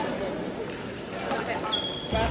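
Badminton rackets striking shuttlecocks, a few sharp hits in a large gym hall, with voices in the background. A brief high squeak near the end.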